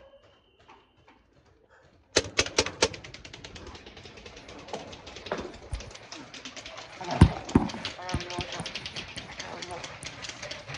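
About two seconds of near silence, then paintball markers firing rapidly on full auto: a fast, unbroken run of sharp cracks, about a dozen a second, with a louder thump about seven seconds in.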